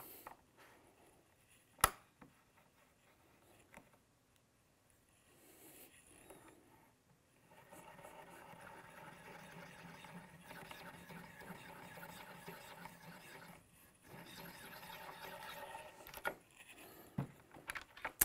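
A hand-cranked Forster Original Case Trimmer turning the outside of a brass case neck: a faint, steady mechanical whir of the cutter and spindle as the handle is turned, with a short break in the middle. A single sharp click comes about two seconds in.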